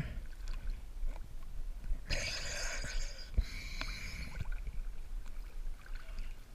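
Water lapping and sloshing against a camera held at the sea surface, with a steady low rumble and small scattered splashes and clicks.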